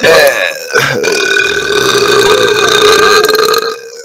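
A person's voice making a very loud, drawn-out vocal noise: a short burst, then one long sound held on a steady pitch for about three seconds that drops in pitch as it ends. Laughter comes in near the start.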